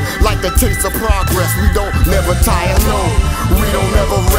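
Hip-hop track: a male rapper rapping over a beat with a steady drum pattern.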